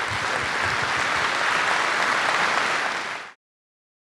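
Indoor audience applauding, steady clapping that fades slightly and then cuts off abruptly a little over three seconds in.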